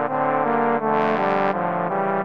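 Trombone trio playing a sea-shanty tune in three-part harmony, the notes changing several times, with a brighter, louder-sounding chord about a second in.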